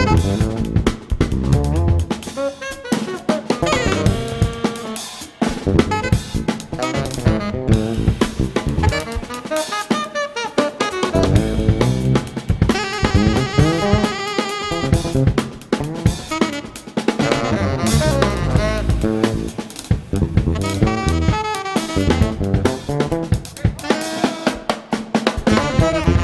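Live jazz-rock band: fretless electric bass and two saxophones playing a fast, intricate unison line over a drum kit with snare, rimshots and bass drum.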